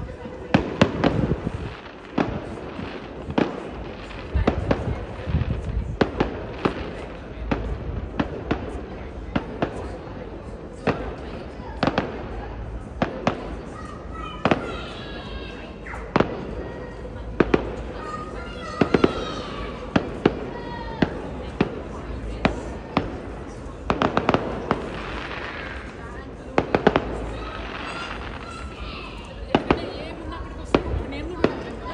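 Aerial fireworks bursting in quick succession: many sharp bangs throughout, some coming in rapid clusters.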